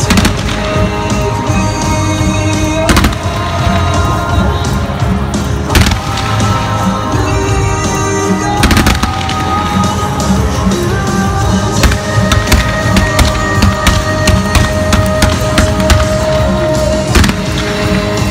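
Loud music with fireworks going off over it: single sharp bangs every few seconds and a dense run of rapid crackling near the end.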